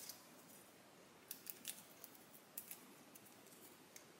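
Near silence, broken by a few faint small clicks and ticks from fingers handling a small paper die-cut and its adhesive foam dots. The clicks come in a short cluster a little over a second in and again near three seconds.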